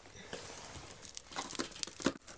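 Irregular crinkling and rustling with small clicks as a baby rummages through a wicker basket of toys.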